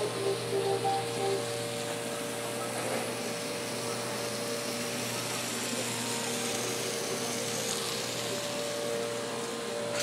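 Steady hum and hiss of running commercial-kitchen equipment, with a faint steady tone and no sudden events.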